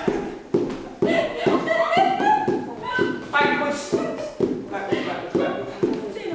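Indistinct voices of several people talking, with a few sharp knocks or taps scattered through.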